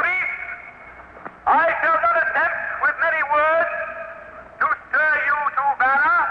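A man's voice declaiming a speech in long, drawn-out phrases with short pauses between them.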